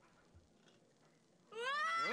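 Near silence, then about a second and a half in a boy's drawn-out, high shout that rises in pitch.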